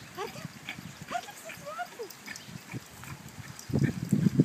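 Short high-pitched squeaks and yips from a warthog and Yorkshire terriers at play, coming thick and fast in the first two seconds. Louder low bursts start just before the end.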